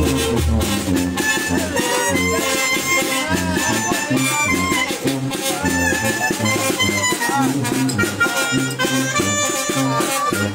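Live brass band playing, a sousaphone's bass line stepping between short low notes under the melody.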